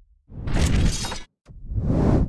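Two loud, noisy sound-effect hits in an animated logo transition. The first starts about a third of a second in and lasts nearly a second. The second starts about halfway through, and both cut off abruptly.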